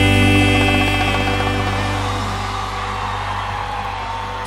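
Closing chord of a sertanejo band song, held and slowly fading out.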